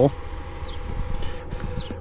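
Outdoor background in a pause between words: a low rumble, likely wind on the microphone, under a steady faint hum, with two brief faint high chirps, one near the middle and one near the end.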